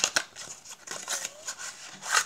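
Cardboard tuck box of a new deck of playing cards being opened and the deck slid out by hand: a few sharp clicks at the start, then light rustling and scraping of card stock.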